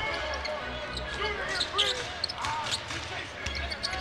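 Basketball court sound during live play: a ball being dribbled on the hardwood floor over a low murmur of crowd voices in the arena.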